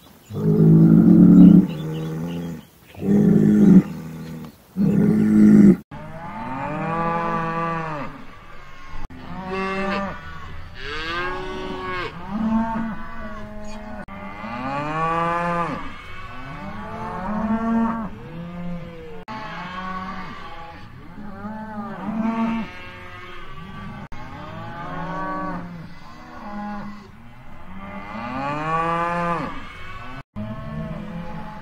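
Cattle mooing: three loud, deep moos one after another, then, after a sudden change about six seconds in, many cattle mooing over one another, each call rising and falling in pitch.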